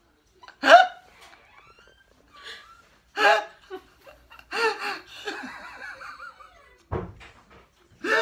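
A man laughing hard in several loud bursts with short breaks between, the loudest one near the start.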